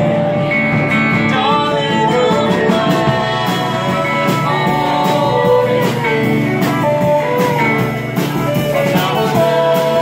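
Live acoustic band music: strummed acoustic guitar with fiddle and upright bass, with singing.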